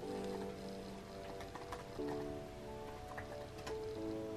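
Soft background music of sustained chords that change about every two seconds, with a few faint clicks of typing on a laptop keyboard.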